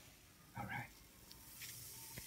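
Faint fizzing of a citric acid and baking soda mixture foaming up in a plastic cup, with a brief faint sound about half a second in.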